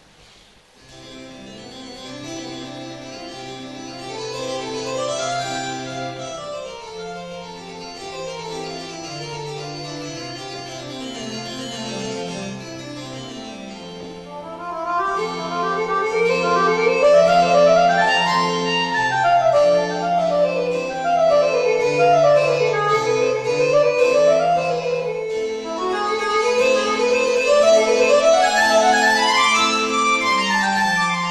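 Solo Roland digital accordion (V-Accordion) playing a fast piece: quick runs of notes sweep up and down over held bass notes. It starts about a second in and grows louder about halfway through.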